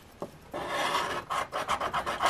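A scratch-off lottery ticket being scraped with a hand-held scraper, rubbing off its coating in rapid, rasping strokes. They start about half a second in, after a light tap.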